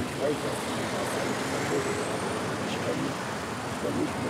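Steady city street traffic: cars and a truck passing on the road, making a continuous rumble and hiss, with faint talk underneath.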